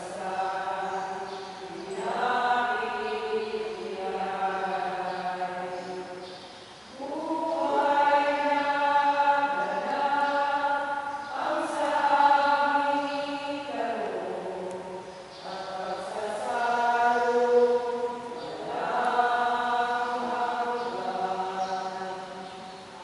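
Voices singing a slow, chant-like hymn in phrases of long held notes, part of the sung liturgy of a Catholic Mass.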